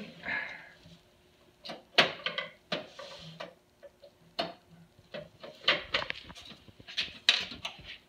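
Irregular sharp clicks and taps of a screwdriver working at screws under a photocopier's plastic control panel, about ten knocks of metal on metal and plastic.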